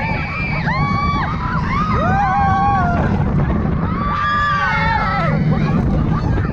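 Roller coaster riders screaming in three long held cries over the steady rumble of the train on the track and wind rushing past the microphone.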